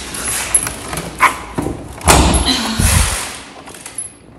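A front-loading washer-dryer combo's door being pulled open: a couple of sharp clicks, then a heavier thud and clatter about two seconds in, the loudest sound here.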